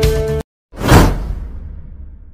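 Intro music cuts off abruptly, then a whoosh sound effect swells to its loudest about a second in and slowly fades away.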